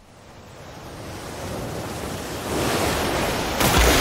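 Rushing water of an oncoming flood surge, a noisy wash that grows steadily louder and jumps up sharply near the end as the water arrives.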